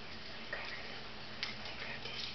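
Handheld training clicker clicked twice, about a second apart, marking the dog's correct behaviour before a treat.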